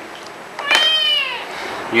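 A kitten meowing once, a high call that falls in pitch over about three-quarters of a second.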